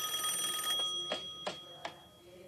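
A telephone's bell ringing with a steady high ring that stops under a second in and fades, followed by three or four light knocks.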